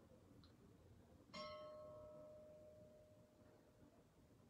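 A single bell-like chime about a second and a half in: one clear tone with higher overtones that rings and slowly fades.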